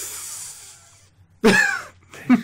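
A person's breathy laughing exhale into a close microphone: a hiss that fades out over about a second. It is followed by a short burst of voice about a second and a half in.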